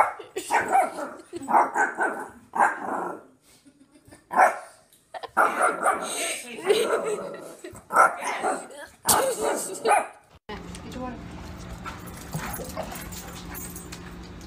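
A small dog barking in short bursts, roughly once a second with some pauses, on and off for about ten seconds.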